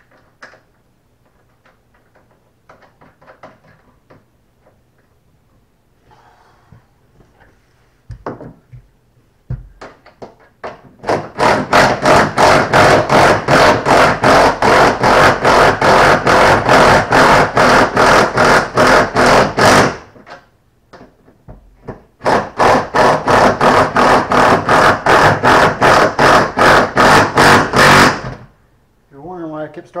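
Cordless impact driver hammering nuts down onto the stainless bow-eye studs from inside the hull, in two long runs of rapid, even strikes with a short pause between, after a few quiet knocks. It is run in a slow start-and-stop way because stainless threads tend to gall.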